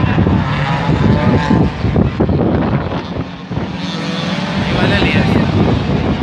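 Race car engines running on the circuit, loud and continuous.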